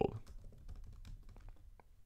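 Typing on a computer keyboard: an irregular run of light, faint key clicks as a word is typed out.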